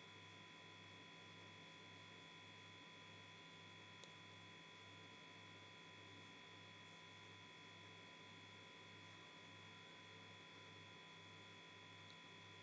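Near silence: room tone with a faint steady electrical hum and a low hum that throbs at an even rate, and one faint click about four seconds in.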